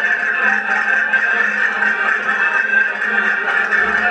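Accordion playing a folk dance tune, its chords held steadily.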